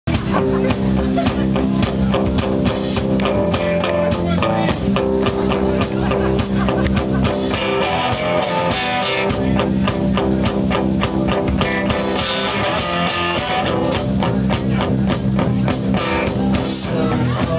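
Live electric guitar played through an amplifier with a drum kit keeping a steady beat, an instrumental rock passage.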